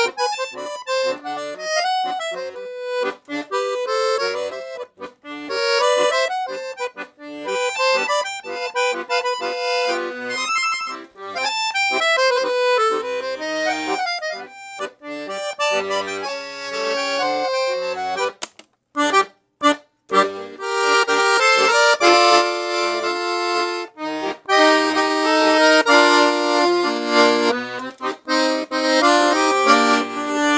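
Scandalli 120-bass piano accordion with two sets of treble reeds (low and middle) being played: a quick-moving melody of short notes over bass accompaniment. About two-thirds of the way through there are a few short breaks, then fuller, louder held chords.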